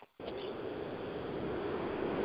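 Steady rushing road noise of a moving vehicle carried over a mobile phone line, cutting out completely for a moment at the start as the call drops out.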